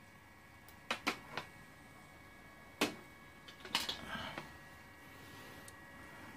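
Sharp clicks and knocks of objects being handled and set down on a cluttered electronics workbench: three quick ones about a second in, one near three seconds, and a short clatter around four seconds. Under them runs a faint steady high-pitched electrical hum.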